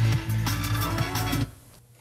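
Music with a beat and a bass line playing through a car's stereo speakers from a portable CarPlay head unit, picked up from across the cabin; it cuts off about one and a half seconds in.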